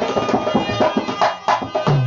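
Dholak played in quick, dense strokes over a harmonium's steady reed tones: an instrumental passage of a Rajasthani folk song.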